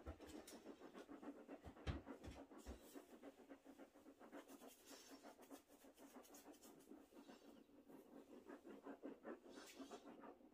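Faint, rapid, rhythmic panting, several quick breaths a second, with no pause.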